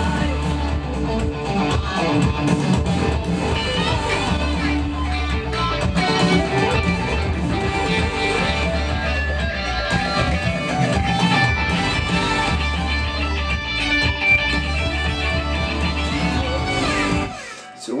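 Fender Stratocaster electric guitar played through a Line 6 POD X3 Live modelling a Vox amp, over a full-band track with a strong bass line. The music cuts off abruptly just before the end.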